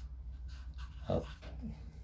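Faint scratching of a marker pen writing on a notebook page, over a steady low hum, broken about a second in by one short spoken word.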